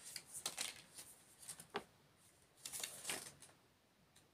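An oracle card deck being handled and shuffled by hand: faint, scattered flicks and rustles of cards in a few short clusters.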